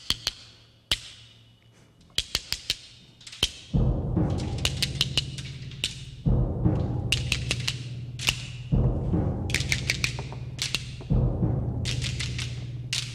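Stones struck together in sharp clicks, singly and in quick runs, imitating the loading of a magazine and the rattle of machine-gun fire. From about four seconds in, a low drum roll joins and swells anew about every two and a half seconds, with the stone clicks going on over it.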